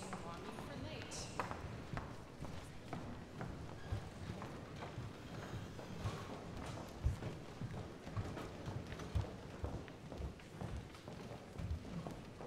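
Footsteps of a group of people walking up to the front: many irregular thuds, the loudest about seven seconds in, over a low murmur of voices in the room.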